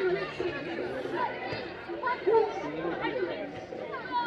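Several people's voices chattering at once, overlapping, with no single clear speaker.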